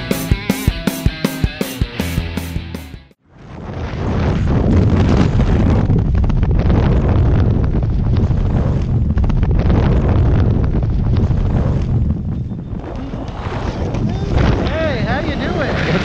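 A rock music track plays and cuts off about three seconds in. Then the freefall wind rushes hard over the camera microphone, easing a little near the end.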